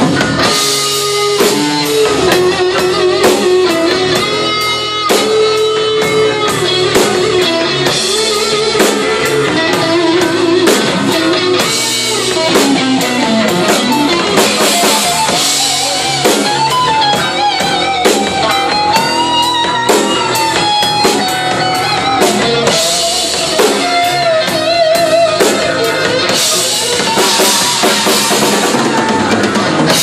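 A live rock band playing an instrumental passage on electric guitars, bass and drum kit. A lead line wavers and bends in pitch, climbing higher in the middle of the passage.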